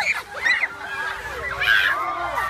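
Several children shrieking and squealing with laughter, high voices overlapping and sliding up and down in pitch.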